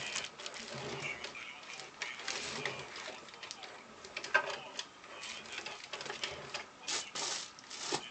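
Bang & Olufsen Beosound 9000 CD changer's disc carriage travelling along its track from slot to slot. It runs with a mechanical whir broken by irregular clicks and knocks, busiest near the end.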